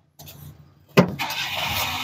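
The cab door of a Daewoo Labo mini truck being opened: a sharp latch click about a second in, followed by a steady rushing noise as the door swings open.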